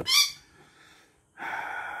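Australian magpie giving one short, high-pitched call right at the start, followed about a second and a half in by a person's long, breathy sigh.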